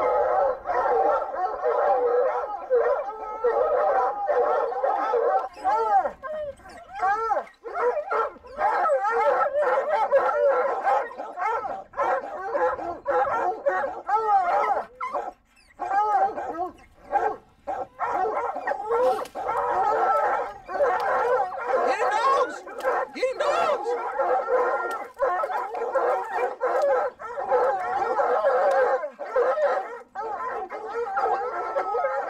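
Several hunting hounds baying together without pause at the foot of a tree: they are barking treed, holding a mountain lion up in the branches. The overlapping voices drop away in brief lulls a few times.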